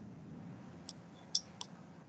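Three faint, sharp computer-mouse clicks about a second in, the last two close together, over quiet room tone.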